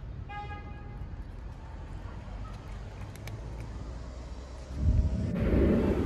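Steady street-traffic rumble with a short car-horn toot near the start and a louder passing vehicle near the end. Faint clicks of a cat crunching dry kibble.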